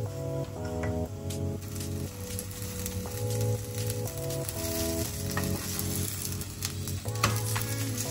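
A paratha frying on a flat tawa, with oil being spooned over it, sizzles. The sizzle grows louder from about halfway in, with a few light clicks of the spoon on the pan. Background music with steady chords plays throughout.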